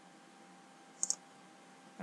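A computer mouse button clicking once about a second in, heard as two quick ticks, the press and the release, as a sketch line's endpoint is placed.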